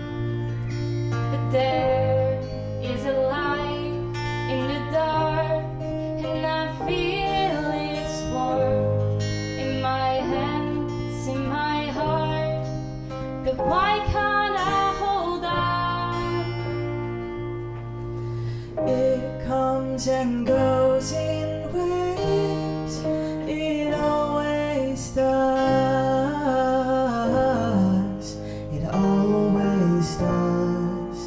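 Live song with an acoustic guitar strummed under a woman's singing voice.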